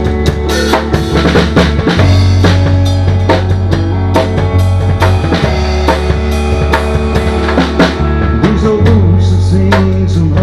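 Live country band playing the instrumental intro of a song: a drum kit keeps a steady beat on bass drum, snare and cymbals under guitar and sustained low bass notes.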